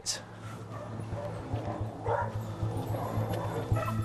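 Dogs barking and yipping a few times, over background music with a low steady pulse.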